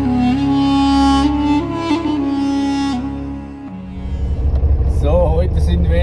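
Slow bowed-string music with long held notes for the first three and a half seconds, then a cut to the low, steady running of a Mercedes-Benz Vario 818 truck's diesel engine, with a man's voice starting near the end.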